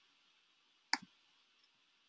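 A single sharp click of a computer mouse button about a second in, as on-screen menus are clicked through.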